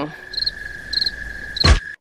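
Cricket-chirp sound effect, three short high chirps about half a second apart over a faint steady tone: the comic 'crickets' of an awkward silence with no answer. A short, loud swoosh near the end.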